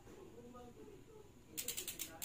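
Rear bicycle hub's freehub pawls clicking in a quick ratcheting run as the wheel is turned, starting near the end.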